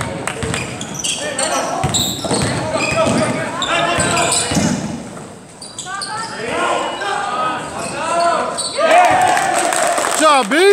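Basketball being dribbled on a hardwood gym floor, with sneaker squeaks and shouting voices in a large, echoing gym. The squeaks crowd together near the end.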